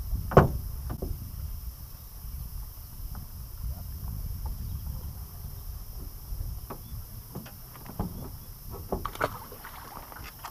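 A landing net worked in the water over the side of a small boat: scattered knocks and light splashes, the loudest a sharp knock about half a second in, over a steady low wind rumble on the microphone.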